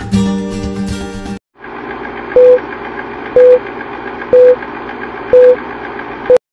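Background music cuts off, and an old film-countdown sound effect follows: a steady projector-like whir with a short, loud beep once a second, four beeps in all.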